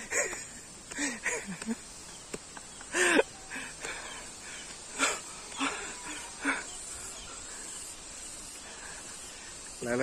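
A few short, scattered voice sounds: brief calls and utterances, the loudest one about three seconds in, over a steady faint hiss of outdoor background.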